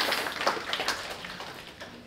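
Scattered audience clapping that thins out and fades away over the first second and a half.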